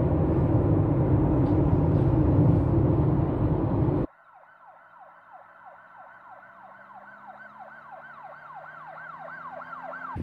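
Loud, steady road and wind noise inside a car at highway speed, cutting off abruptly about four seconds in. Then a much quieter siren-like wail follows, repeating about three times a second and slowly swelling.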